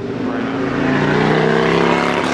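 Subaru WRX's turbocharged flat-four engine revving, a steady engine note that grows louder across the two seconds.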